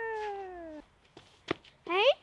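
A child's long wordless vocal sound, sliding slowly down in pitch, followed near the end by a short rising squeal.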